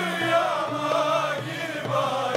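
A Turkish classical music ensemble with violins and oud plays a song in makam uşşak, with a mixed choir singing along.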